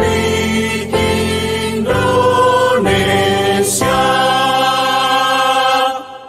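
A choir singing the closing line of an Indonesian-language march, the chords changing about once a second before the last one is held from about four seconds in and cut off sharply near the end.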